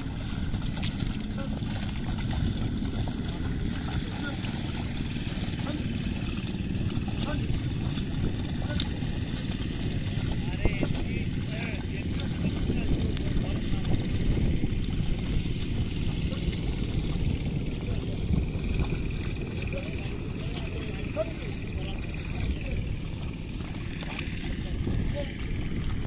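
Pair of oxen dragging a plough through flooded paddy mud: steady low sloshing of hooves and plough in water and mud, under a constant low rumble of wind on the microphone.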